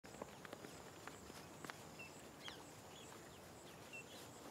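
Faint rural outdoor ambience: a steady high-pitched insect hum with short bird chirps and a few scattered light clicks.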